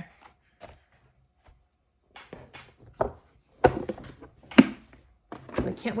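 Plastic ArtBin Sketchboard case being handled and shut: a few light clacks, then two louder knocks about a second apart.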